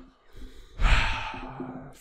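A person breathing out heavily into a close microphone, a sigh lasting about a second that starts just under a second in.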